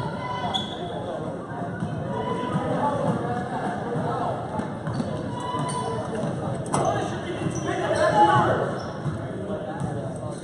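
A basketball bouncing on a gym floor during play, under the steady chatter of spectators in a large hall.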